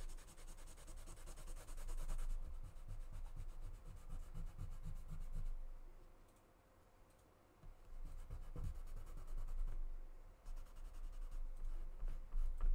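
Rapid rubbing strokes of a small applicator working metallic paint onto the raised, textured surface of a paper clay relief, with a brief pause about halfway through before the rubbing resumes.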